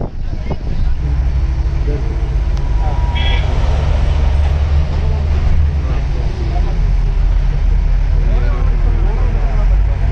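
Engine and road rumble heard from inside a moving bus: a loud, steady low rumble.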